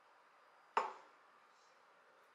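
A single sharp knock of a kitchen knife against a wooden cutting board while cutting into a tomato, about three quarters of a second in.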